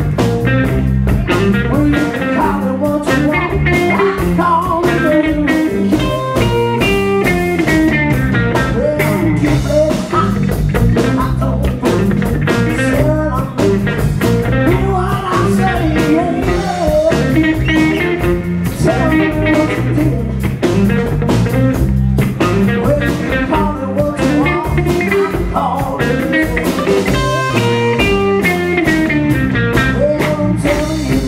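Live blues band playing loudly: electric guitar, bass and drums, with a man singing.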